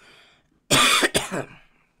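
A man coughs twice in quick succession, harsh and loud, starting a little under a second in.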